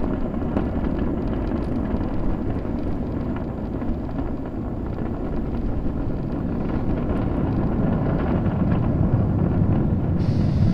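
Falcon 9 first stage, nine Merlin 1D engines, giving a steady, deep roar during ascent about half a minute after liftoff. It grows slightly louder toward the end.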